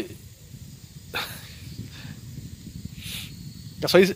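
A pause in a man's speech: two short breathy hisses, about a second in and about three seconds in, over a steady low rumble, with his voice starting again at the very end.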